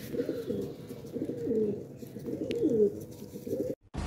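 Domestic pigeons cooing: several low, falling coos overlapping, until the sound cuts off suddenly just before the end.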